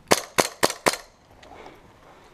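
Airsoft pistol fired four times in quick succession, about four shots a second, within the first second.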